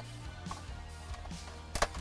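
Plastic power outlet socket snapping out of its dash trim bezel as it is pushed through from behind: a sharp click or two near the end, over quiet background music.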